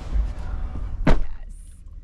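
Limousine door slamming shut: one sharp thud about a second in, after which the surrounding noise drops away.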